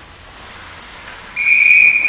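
A single long, steady, high-pitched blast of a coach's whistle at hockey practice, starting suddenly about one and a half seconds in, after near-quiet rink noise.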